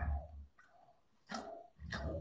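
Short voice-like sounds: a louder one at the start, then two brief ones in the second half.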